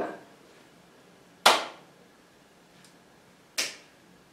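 Two single hand claps about two seconds apart, made as the hands meet while the arms circle in opposite directions, each with a short room echo.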